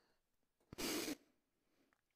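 A short audible breath out lasting under half a second, just after a faint click about three-quarters of a second in; otherwise near silence.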